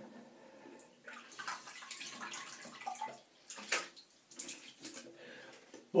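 Water splashing in a basin in a series of irregular splashes, as when rinsing the face or razor after a shave.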